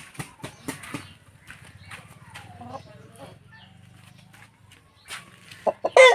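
Roosters clucking now and then, with scattered light clicks; a loud burst of clucking comes near the end.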